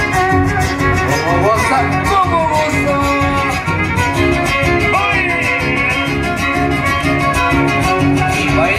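A live huasteco string trio playing loud dance music: a violin playing a sliding melody over steadily strummed guitars.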